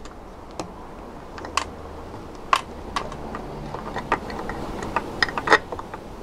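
Irregular light clicks and taps from a DC power splitter and its cables being handled and fitted onto the telescope rig, over a low steady background hum.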